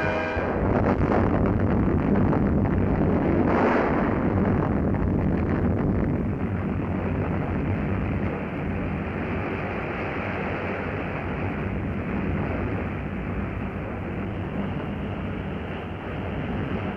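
Atomic bomb explosion on a newsreel soundtrack: a long, deep rumble that starts suddenly, swells over the first few seconds and then slowly dies away.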